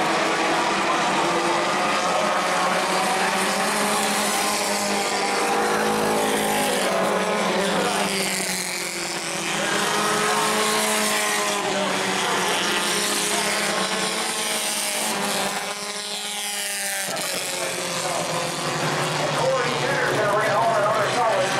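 Bomber-class stock car engines running on a short oval, several pitches rising and falling as cars accelerate and pass. The sound dips briefly twice, once a little before the middle and once near the end.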